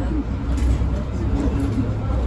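Mercedes-Benz Citaro 2 city bus heard from inside while it drives: a steady, deep rumble from its engine and drivetrain. Indistinct voices are heard over it.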